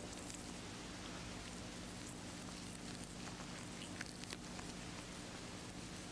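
Faint crackling and rustling of a rabbit's skin being pulled off the carcass by hand, with a few sharper clicks about four seconds in. A steady low hum and hiss run underneath.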